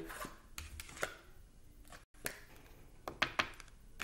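Tarot cards being handled and laid down on a wooden tabletop: a few sharp, light taps and clicks, several close together near the end.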